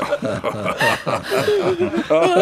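Several people laughing mockingly, overlapping chuckles and snickers in short repeated pulses.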